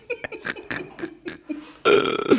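Men laughing: short breathy bursts of laughter in quick succession, a few per second, growing louder near the end.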